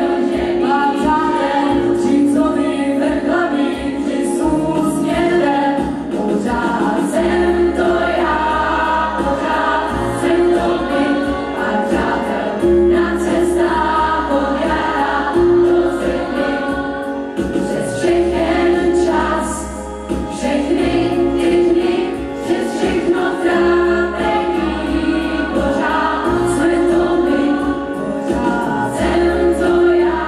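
A female soloist singing into a microphone with a choir behind her, performed live over instrumental accompaniment with long held bass notes.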